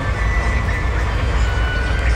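Passenger train running, heard from inside the coach: a steady low rumble with an even haze of running noise.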